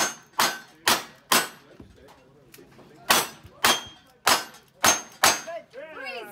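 Revolver shots: four about half a second apart, a pause of under two seconds, then five more at a similar pace.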